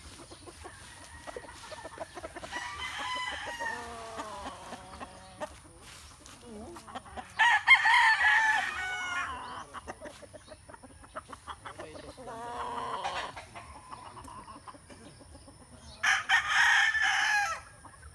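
Young gamecock stags crowing: four separate crows a few seconds apart, the second and last the loudest.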